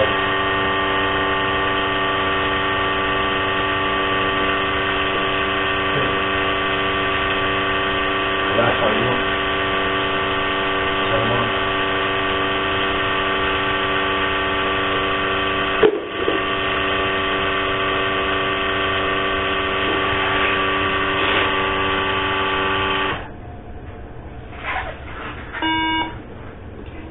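A steady electronic buzzing tone, loud and unchanging, breaks for an instant about two-thirds through and cuts off about 23 seconds in. Faint voices sit underneath, and a few short beeps follow near the end.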